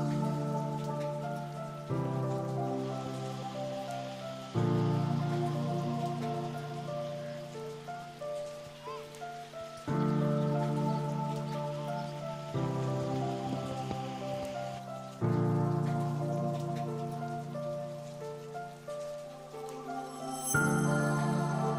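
Slow, calm background music: sustained chords that change every few seconds, each one coming in louder and then fading, over a soft hiss.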